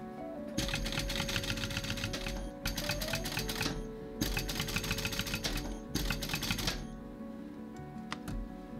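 Industrial sewing machine stitching a zipper into white cowhide leather: a rapid, even clatter of needle strokes in four short runs with brief stops between them.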